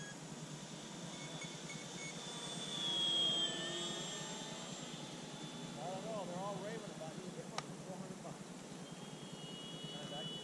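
Electric RC airplane's motor and propeller whine, getting louder as it flies close about three seconds in and dropping slightly in pitch as it passes, then fading.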